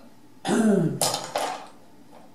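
A man clearing his throat: a short voiced sound falling in pitch, then a rasping burst.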